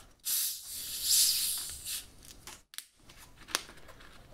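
Carbonated cola hissing out as the screw cap of a plastic soda bottle is twisted loose, a hiss of under two seconds, followed by a few light clicks.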